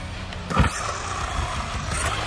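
Losi DBXL-E 2.0 1/5-scale electric RC buggy's brushless motor whining steadily at speed, with one hard thump about half a second in.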